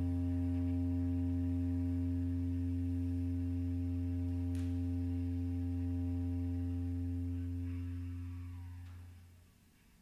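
A single low bass clarinet note, held steady for about nine seconds and then fading away as the piece ends.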